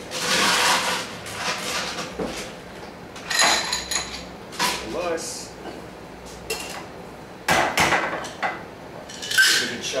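Ice cubes clattering into the glass half of a Boston shaker, followed by scattered clinks and a short metallic ring as the metal tin is handled. About seven and a half seconds in comes a single sharp knock, then the shaker starts being shaken with ice near the end.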